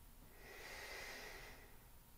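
A man's faint, slow breath out while resting face-down after a strenuous core hold, lasting about a second and a half.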